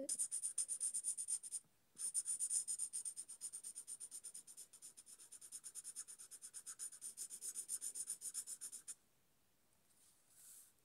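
Marker pen tip scrubbing rapidly back and forth on paper to fill in an area of colour, about seven strokes a second. It pauses briefly about one and a half seconds in, then stops about a second before the end.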